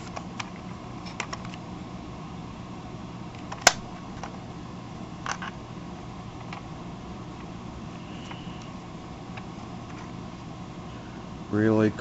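Handling of a Galoob Action Fleet Millennium Falcon toy: a few small plastic clicks and taps as its hinged hatches are worked and snapped shut, the sharpest click about four seconds in, over a steady low hum.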